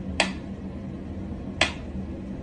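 Mechanical pyramid metronome ticking slowly: two sharp ticks about a second and a half apart as its pendulum swings.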